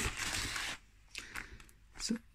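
Thin card being handled and pressed into place by hand: a rustling scrape for under a second, then a few faint brief rustles.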